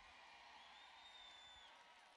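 Near silence: a large audience in an arena, faintly heard, with a faint high steady whistle-like tone from about half a second in to near the end.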